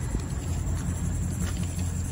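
Ford Econoline E-250 van's engine idling with a steady low rumble.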